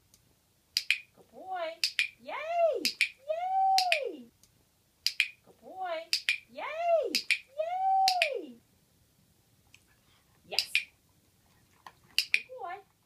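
Sharp dog-training clicks, about five of them spaced roughly two seconds apart. Between the clicks a woman gives high, sing-song praise in drawn-out rising-and-falling notes.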